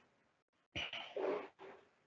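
A man's short vocal sound without words, under a second long around the middle.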